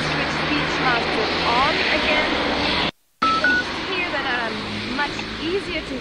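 Busy street-corner noise of traffic and passers-by talking, picked up through hearing-aid microphones with the noise reduction off. About three seconds in the sound cuts out briefly and two short beeps sound, the hearing aids switching to their speech-focus program, after which the street noise is quieter.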